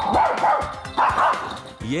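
Small dog barking twice, about a second apart, at animals on a television screen, which it takes for a threat to the house. Background music plays underneath.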